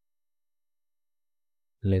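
Silence, with no sound at all, until a man starts speaking near the end.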